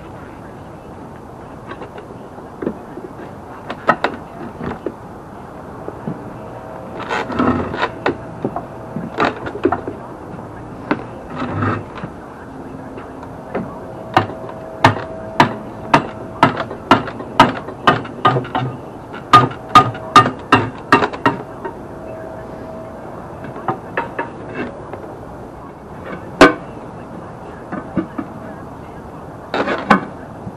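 Manual tire changer being worked by hand to lever a tire off a steel wheel: the steel bar clacks against the rim and centre post in a run of sharp metal clicks and knocks, about two a second through the busiest middle stretch, with a squeaking tone at times as the bead is forced over the rim.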